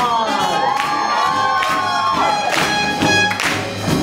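Live swing band playing with a steady beat, with a crowd cheering and whooping over it in the first two seconds.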